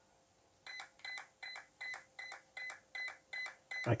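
Brushless RC car ESC beeping in a steady series of short high beeps, about two and a half a second, starting about half a second in. The ESC was powered on with its programming button held down, which starts its programming mode.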